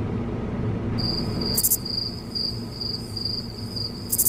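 Chirping-crickets sound effect: a high, pulsing trill that starts abruptly about a second in and pulses two or three times a second over low room hum. It is the stock 'crickets' gag for an awkward, unanswered silence.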